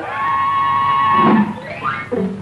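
Cartoon sound effect: a steady, high held tone for about a second and a half, then a quick rising glide.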